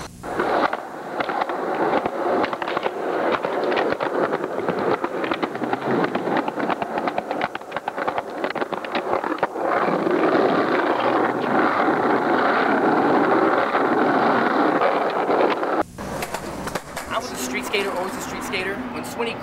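Skateboard rolling over rough pavement, with a dense run of clacks and knocks from the board and wheels, heard through thin old camcorder audio with almost no bass; it cuts off abruptly near the end.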